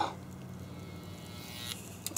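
Panasonic inverter microwave oven running with a faint, steady electric hum while its failing inverter power supply smokes; a faint hiss over the hum stops near the end.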